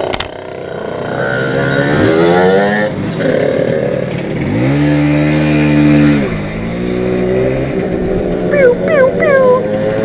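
Simson moped's small two-stroke engine revving: its pitch climbs about two seconds in, holds high for about a second and a half in the middle, then drops away.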